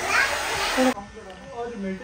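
Hand-held hair dryer blowing for about a second and cutting off abruptly, followed by children's voices.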